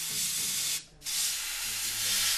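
Paint spray gun hissing in two bursts, with a brief stop just under a second in, as paint is sprayed onto toy figures.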